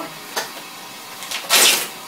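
A single click, then about a second and a half in a short burst of plastic rustling as a plastic wrapper is shaken open.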